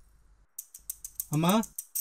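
A man's voice making one short sound, about a second and a half in, after a stretch of faint, quick clicking ticks.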